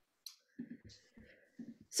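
Several faint, short clicks and soft taps of computer use, picked up over a video-call microphone during a pause in speech.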